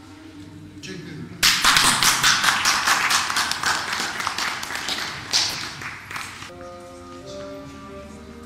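Audience applauding: the clapping starts abruptly about a second and a half in and dies away over about five seconds. Then music with held notes begins near the end.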